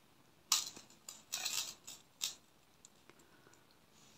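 Faint, brief clinks and rustles of a thin metal chain and glass crystal beads being picked up and handled on a tabletop. There are a few short bursts in the first half, then a couple of tiny ticks near the end.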